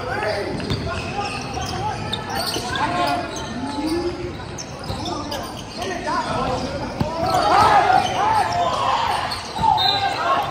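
Basketball game sounds in an echoing gym: the ball bouncing on the hardwood floor and sneakers squeaking as players run, busiest in the second half.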